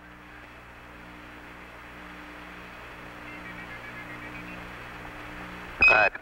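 Open Apollo air-to-ground radio channel with no one talking: a steady hiss with a low hum underneath. Near the end comes a short high beep, the Quindar tone that keys a transmission from Mission Control.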